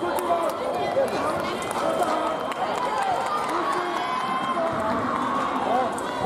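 Several voices calling and shouting over one another, with fencers' footsteps on the piste.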